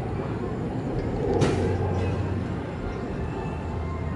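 Steady low hum under outdoor background noise, with one short click about a second and a half in.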